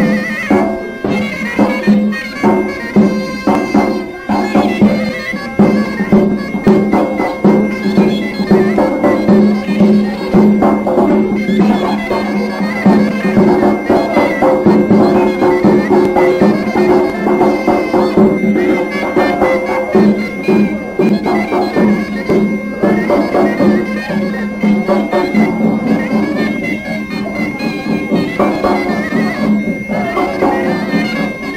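Greek folk music on pipiza shawms, loud and nasal, with a steady held drone under an ornamented melody, driven by the beats of a daouli bass drum.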